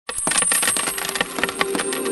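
A shower of metal coins clattering and jingling, a dense run of rapid clinks that starts abruptly, with ringing tones among them after about a second.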